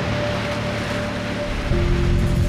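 Ocean surf washing under a soundtrack of held music chords. A new low note comes in near the end.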